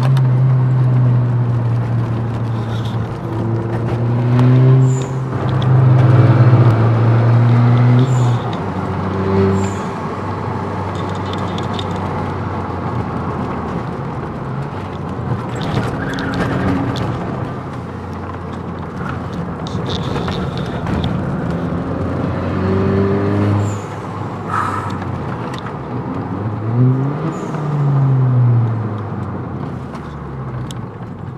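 SEAT León FR engine and road noise heard from inside the cabin on a track lap. The engine is loudest for the first eight seconds or so, then runs lower, and near the end the revs rise and fall once.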